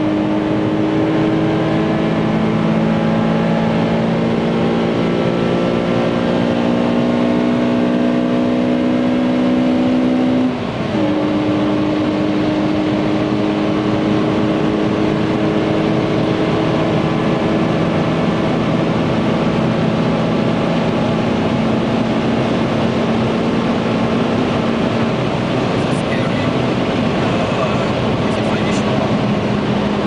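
Honda Civic Type R's four-cylinder VTEC engine heard from inside the cabin under hard acceleration through the upper gears, its pitch climbing slowly. There is a short break in the sound about ten seconds in, as at a gear change, and then it pulls on steadily with road noise.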